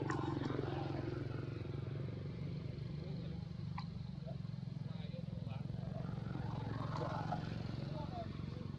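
A steady low motor hum throughout, with short stretches of voices over it about a second in and again near the end.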